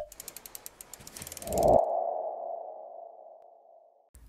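Sound effects for an animated logo: a sharp click, then a quick run of ticks that builds for about a second and a half, then a steady ringing tone that slowly fades away.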